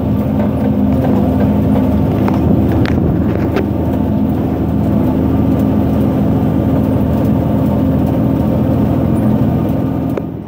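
John Deere tractor engine running steadily, heard from inside the cab, with a few light clicks about three seconds in.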